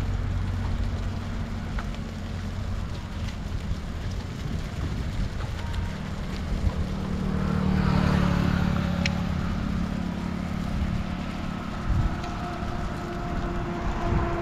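Highway traffic: a steady low rumble of road vehicles, with one vehicle passing and loudest about eight seconds in.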